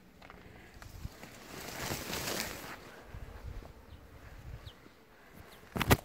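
Garden leaves and stems rustling as plants are pushed aside by hand, loudest in the middle, with small ticks and soft thumps, then one sharp knock near the end.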